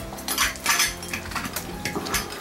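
A chandelier's hanging crystal drops clinking and jingling against each other in quick, irregular clinks as the fixture is held and shifted at the ceiling.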